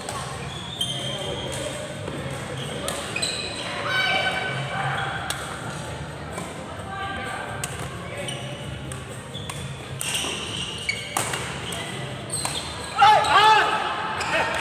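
Badminton play in a large sports hall: sharp racket-on-shuttlecock hits, here and from neighbouring courts, over background chatter, with a loud burst of sneaker squeaks on the court floor about a second before the end.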